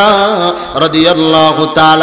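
A man's voice chanting in a melodic sermon tune, wavering in pitch at first and then holding one long steady note from just under a second in.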